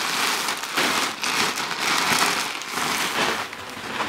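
Black recycled-plastic mailer bag crinkling and rustling loudly as it is handled and shaken, in an irregular, uneven stream of crackling.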